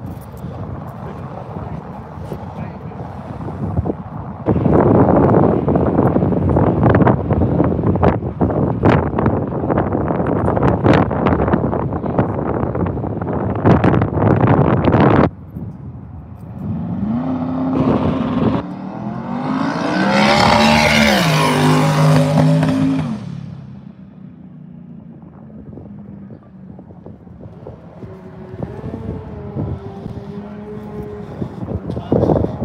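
Twin-turbo big-block Ford dragster at the drag strip: a long loud rushing stretch full of crackles, then just past halfway the engine note climbs and holds for several seconds before fading away down the track.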